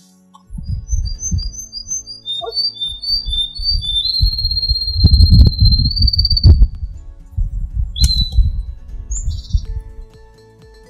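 Wind buffeting the microphone in irregular low rumbling gusts, with a bird singing over it: a run of short high chirps, then a long high note held for about three seconds in the middle, and another short call near the end.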